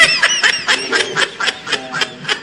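A person laughing close to the microphone, a rapid run of short high-pitched bursts that eases off toward the end.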